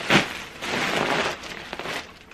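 Large plastic mailer bag crinkling and rustling as it is lifted and handled, with a sharp crackle just after the start.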